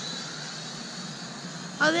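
Small SYMA remote-control drone's electric motors and propellers, heard as a faint thin high whine that fades out early, over a steady low background rumble. A man's voice cuts in near the end.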